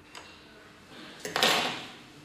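A light click, then about a second and a half in a brief, loud plastic clatter with sharp clicks at its start, from the fiber fusion splicer's clamps and lids being handled as the spliced fiber is moved to the heater.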